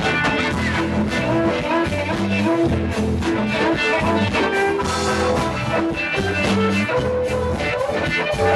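Live band music with a steady beat, an instrumental stretch with no singing.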